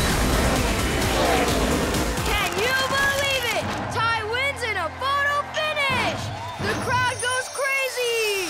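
Animated-cartoon soundtrack: upbeat music with a rushing rumble, then from about two seconds in, a string of short excited wordless vocal cries over the music.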